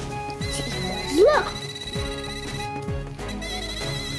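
Sci-Fi Tube toy's electronic sound effect: a high warbling tone that starts shortly in, cuts out for a moment past the middle and comes back. The toy sounds when a body completes the circuit between its two foil-wrapped electrodes, here a hand and a guinea pig.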